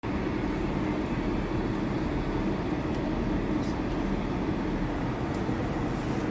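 Intercity bus's diesel engine idling, a steady low rumble heard from inside the cab.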